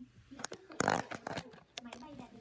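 Tissue paper rustling and crinkling as it is handled, with a few sharp clicks and a short, loud rush about a second in, over a voice in the background.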